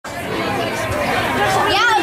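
Overlapping chatter of many people talking at once, with a higher voice rising and falling near the end.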